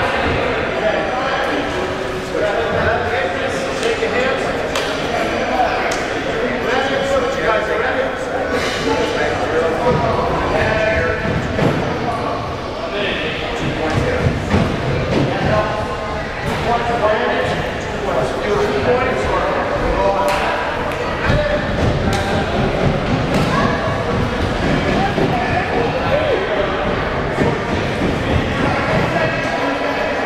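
Many voices talking and calling out at once in a large hall, with occasional thuds.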